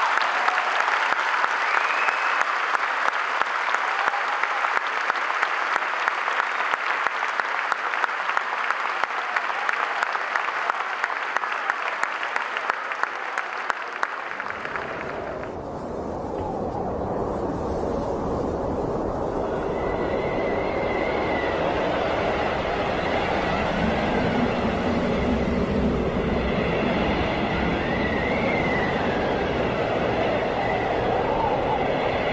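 Audience applauding, dense clapping for about the first fifteen seconds. Then the clapping gives way to a steady low rumbling noise.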